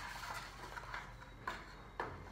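Faint handling noise from a disposable aluminium foil pan with cardboard dividers, a few light crinkles and taps, the clearest about one and a half seconds in and at the end.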